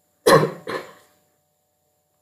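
A person coughing twice in quick succession, the second cough weaker than the first.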